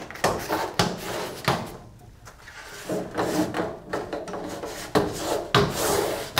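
Handling noise: rustling of a plastic sheet and cloth as screen-printing gear is moved about, broken by several short knocks.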